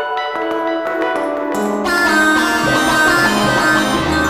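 Generative synth music: Sonic Pi's internal synths and a Korg X5DR synth module playing random notes from a minor pentatonic scale. Pitched notes change several times a second, and the sound grows fuller about two seconds in.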